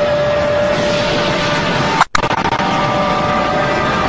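Cartoon battle sound effects: a loud, dense rush of noise like an ongoing explosion or energy blast, with a steady pitched whine over it. It cuts out for a split second about halfway through, then carries on with a higher whine.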